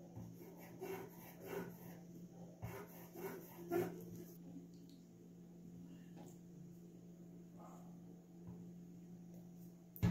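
Faint handling sounds of paper and a plastic glue bottle being worked on a tabletop: a few soft rubs and taps in the first four seconds, then near quiet over a steady low hum.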